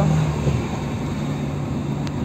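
Steady engine and road noise from a car driving slowly, heard from inside the cabin as an even low hum.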